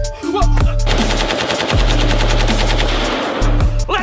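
Rapid automatic-rifle fire, one sustained burst of closely spaced shots lasting about three seconds and starting about a second in, over background music with a heavy bass beat.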